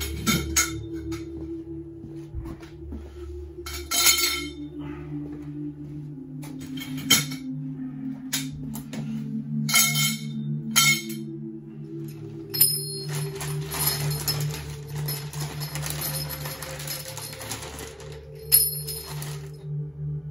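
Lengths of copper pipe clinking with a metallic ring as they are handled and set down on a concrete floor. A longer stretch of rattling and scraping follows in the second half, over steady, droning background music.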